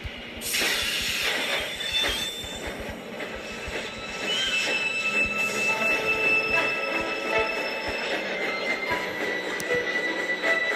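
Recorded train sound effect playing through laptop speakers: a sudden loud rush of noise about half a second in, then a long high-pitched squeal of train wheels held for several seconds, with music faintly underneath.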